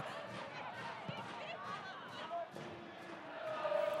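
Faint pitch-side ambience of a football match: distant players' calls and a few faint knocks of the ball being played.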